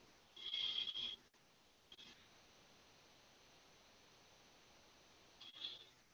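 Near silence on a video-call audio line, broken by a short faint hiss about half a second in.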